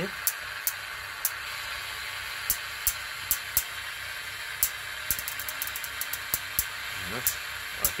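High-voltage sparks snapping at irregular intervals, with a quick run of snaps about five seconds in, over a steady hiss. The sparks come from a Rayview high-frequency stimulator discharging across a spark gap and gas discharge tube.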